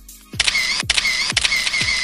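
Camera shutter sound effect: a rapid run of clicks with a whirring wind, starting about half a second in and lasting under two seconds, over electronic pop background music with a steady kick drum.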